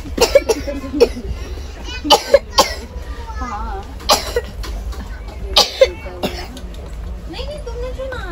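A person coughing close to the microphone, repeatedly in short, loud bursts, over quieter chatter.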